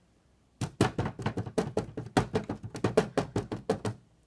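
Hands drumming quickly on a hard surface as an improvised drum roll, about nine sharp taps a second, starting about half a second in and stopping just before the end.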